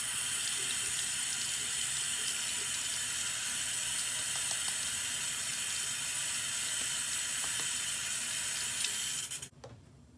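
Water running steadily from a sink tap, used to wet the face before cleansing, then shut off suddenly just before the end.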